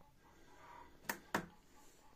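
Two quick, sharp clicks about a quarter second apart: a finger pressing the power button on a digital kitchen scale, which lights up its display.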